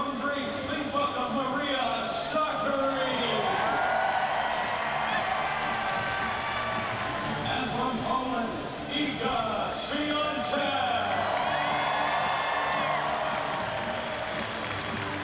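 Large stadium crowd of spectators, many voices talking, shouting and cheering at once.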